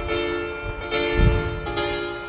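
Instrumental intro of a karaoke backing track for a slow ballad: sustained keyboard chords that change about every second, with soft low bass notes underneath.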